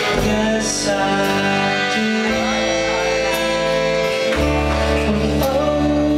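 A man singing with acoustic guitar accompaniment in a live performance, the guitar holding chords under the voice.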